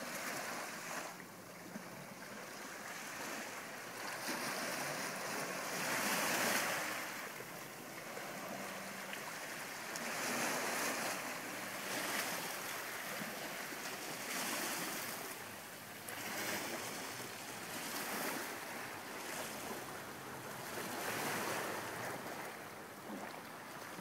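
Gentle sea waves washing onto a sandy shore, each wash swelling and fading every three to four seconds.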